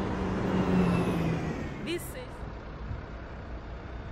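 A car passing close by on the road, its engine and tyre noise dying away about a second and a half in, leaving quieter traffic hum.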